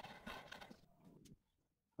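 Faint clicks and scrapes of a hand chisel paring wood at a half-lap joint, cutting off to dead silence just past halfway.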